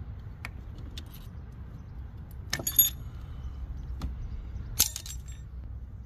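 Metal hand tools clinking and rattling against each other during engine work, with two short bright metallic clatters, about two and a half and five seconds in, over a steady low rumble.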